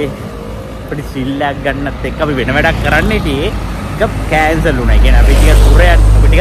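Road traffic running steadily, then a large vehicle passing close by near the end with a loud low rumble.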